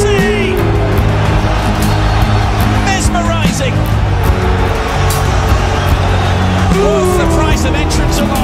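Background music with steady bass notes and a regular beat.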